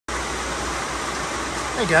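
Steady rush of rainwater pouring from a metal building's downpipe into a Monjolin Smart Filter MINI rainwater pre-tank filter with its cover off, along with falling rain.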